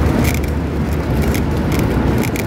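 Street traffic: a steady low rumble of passing cars, with a few faint ticks over it.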